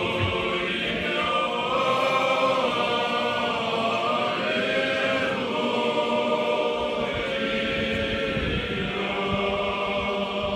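Choir singing a slow Orthodox memorial chant in several voice parts, holding long sustained chords that shift every second or two.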